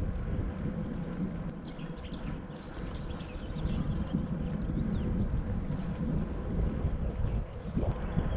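Wind buffeting the microphone and tyres rolling on an asphalt path during a bicycle ride, with a few short bird chirps about two seconds in.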